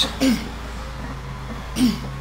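Short exhaled grunts from a man straining through reps on a plate-loaded chest press machine, one just after the start and another near the end, over a low steady hum.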